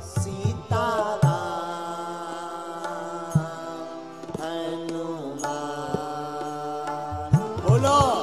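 Devotional Hindu singing: a male voice holding long, slowly gliding notes in a bhajan, with instrumental accompaniment and a few tabla strokes, more of them near the end.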